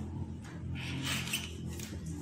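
A felt-tip marker writing on a paper plate: a few short scratchy strokes, over a low steady hum.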